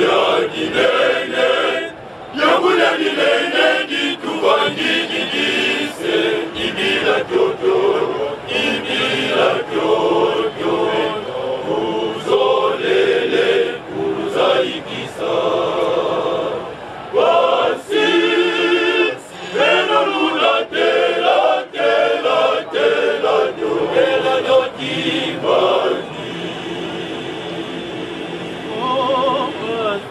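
A men's choir singing together in several voice parts, phrase after phrase with short breaks between them.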